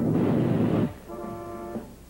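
Cartoon fire-breath sound effect: a loud rushing whoosh that cuts off just before a second in, followed by a softer held musical chord.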